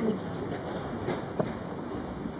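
Steady, reverberant background noise of a large indoor show-jumping arena, with one sharp knock about one and a half seconds in.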